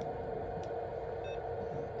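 Steady electrical hum from radio-shack equipment, with a faint click about half a second in and a brief, faint beep a little past the middle.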